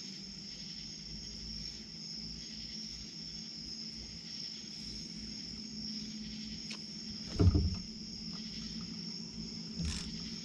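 Crickets chirping steadily over a low, even hum. A single loud dull thump comes about seven and a half seconds in, and a smaller knock near the end.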